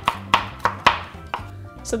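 Chef's knife chopping fresh ginger root on a cutting board, mincing it fine: about five sharp knife strikes against the board in the first second and a half.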